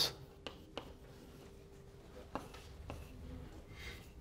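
Chalk writing on a blackboard: faint scratching with a few light taps as a word is written out.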